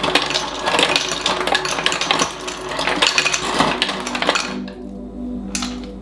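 Ice dispenser dropping ice cubes into a glass, a dense rattling clatter of cubes hitting the glass and chute that stops about four and a half seconds in.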